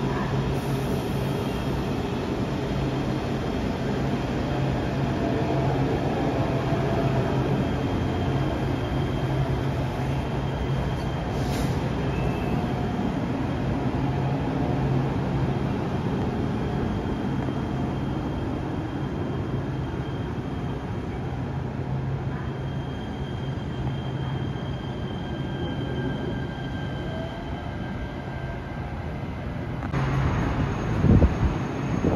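Los Angeles Metro light rail train running slowly past the platform: a steady motor hum over rolling noise, with a faint high wheel squeal in the second half, easing off toward the end.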